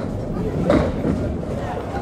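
Candlepin bowling lane: low rumble of a ball rolling down the lane and a short clatter of pins a little under a second in, the ball punching through and knocking down only three pins, with voices in the background.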